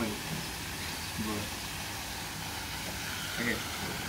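Steady hiss with a low rumble of outdoor background noise, under a few short spoken words.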